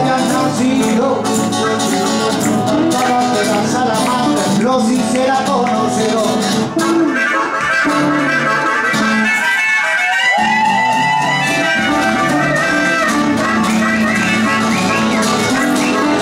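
Live blues band playing an instrumental passage led by acoustic guitars. The low end drops out briefly about two-thirds of the way through, then the full band comes back in.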